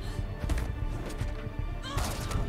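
The TV episode's soundtrack: tense action music with rapid low percussive hits.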